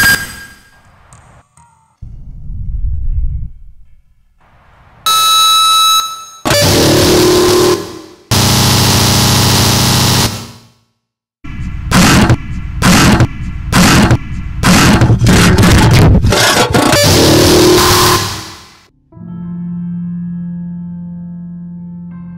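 Harsh noise music: loud blasts of distorted noise that start and cut off abruptly. Midway there is a moment of silence, followed by a rapid, choppy run of short bursts. Near the end the noise gives way to a quieter steady drone of sustained low and high tones.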